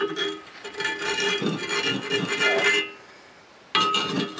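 Background music with a guitar-like plucked-string sound and held tones, with faint voices under it. It drops away briefly near the end, then comes back abruptly.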